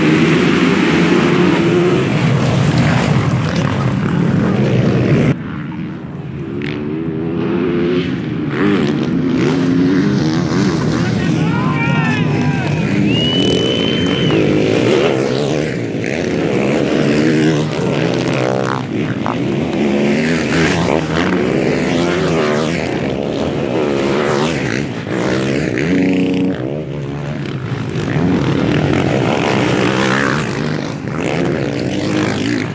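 A pack of MX1 motocross bikes at full throttle makes a dense, loud wall of engine noise for the first five seconds, which stops abruptly. After that, single motocross bikes pass one after another, their engine note rising and falling with throttle and gear changes.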